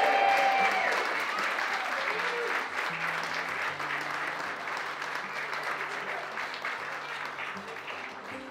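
A crowd of guests applauding, with a few whoops near the start. The clapping is loudest at first and slowly dies down over soft background music.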